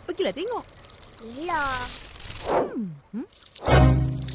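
Squeaky cartoon voices calling "tepi, tepi, tepi" in short sliding cries over background music and a fast rattling flutter, with a low thump just before the end.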